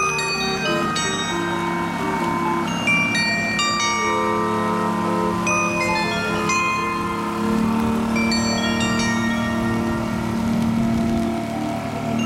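A small carillon of bells on a canal boat playing a melody, its struck notes ringing on and overlapping. A steady low hum runs underneath.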